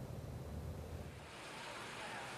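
Faint background noise with no distinct source: a low hum for about the first second, then a steady hiss.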